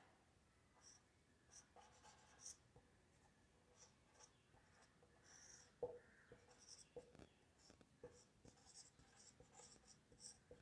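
Faint squeaks and scratches of a marker pen drawing on a whiteboard in short strokes, with a few light taps of the tip against the board.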